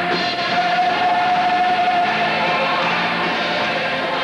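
Music with a choir singing, one note held for about two seconds in the first half.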